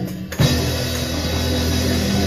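Live band of electric bass and drum kit playing loudly. After a brief drop at the start, the band comes back in with a sharp drum hit about half a second in, then carries on with sustained low bass notes under the drums.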